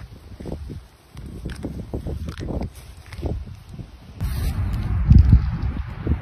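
Gusty wind buffeting a phone's microphone outdoors, an uneven low rumble with faint rustling. The sound changes abruptly about four seconds in and is louder after that.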